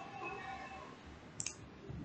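A single computer mouse click about a second and a half in, over faint room tone.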